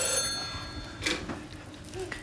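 Landline telephone ringing with a steady tone, cut off about a second in by a click as the handset is picked up.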